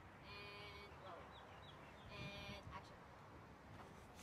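A crow cawing twice, two harsh calls about two seconds apart, with a few faint small-bird chirps between them.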